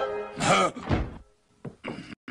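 A cartoon character gasps, then a refrigerator door shuts with a couple of short thunks near the end.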